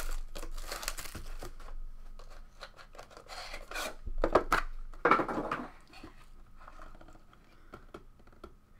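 Plastic shrink wrap crinkling and tearing off a trading-card box, then cardboard rubbing as the box is slid out of its sleeve and opened, in several short irregular bursts that fade toward the end.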